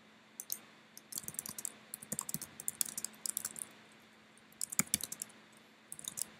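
Computer keyboard typing: quick runs of key clicks, broken by a pause of about a second partway through.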